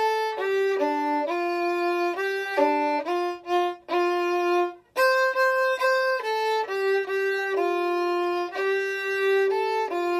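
Solo violin bowing a simple melody in notes of about half a second each, with a short break about four seconds in and another just before five seconds.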